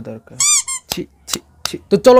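A man's speech, broken about half a second in by two quick high-pitched squeaks one after the other, then a few short clicks.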